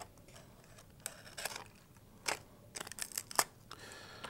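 Faint, scattered small clicks and scratches of a hobby knife tip and fingers working the elevator pushrod free at the tail of a foam micro RC plane, with a cluster of clicks near the end.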